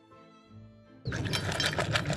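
Soft background music, then about a second in a dog lapping water from a stainless steel bowl, loud and rapid.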